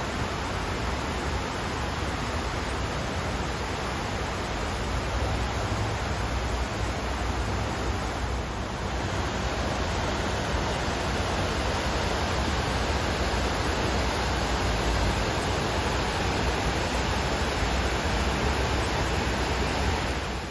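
Steady rushing of water cascading down the walls of the 9/11 Memorial reflecting pool into the basin, a continuous waterfall sound.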